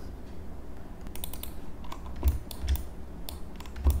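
Scattered light clicks of a computer keyboard, starting about a second in, with a few low thumps, the loudest about halfway through.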